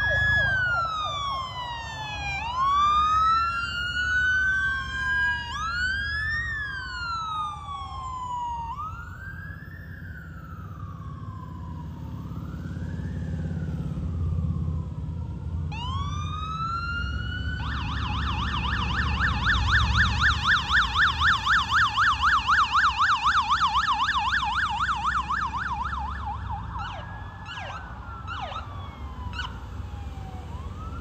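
Police sirens from a motorcycle-escorted motorcade: several wailing sirens rising and falling out of step with one another, then a rapid yelp for about eight seconds from a little past halfway, and a few short blips near the end, over low traffic rumble.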